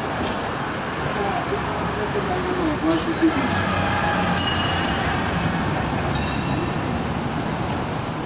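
Steady street traffic noise as an open-sided tour trolley bus drives close past, with indistinct voices in the background.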